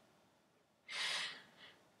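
A woman's single breath between sung lines, about a second in and lasting about half a second.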